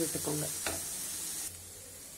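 Chopped onions and green chillies sizzling in oil in a non-stick pan while a spatula stirs them, with one sharp tap about two thirds of a second in. The sizzle drops away suddenly about three quarters of the way through.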